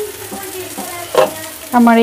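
Eggplant slices frying in shallow oil in a nonstick pan, a steady sizzle, with one sharp knock about a second in.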